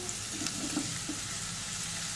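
Onions and spices frying in hot oil in a pan, a steady sizzle, as chopped tomatoes are tipped in from a plate.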